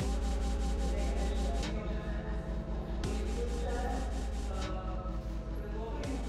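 Sound-art performance audio: a steady low hum under a fast, even scraping pulse, with sustained tones that shift in pitch and a few sharp changes in texture partway through.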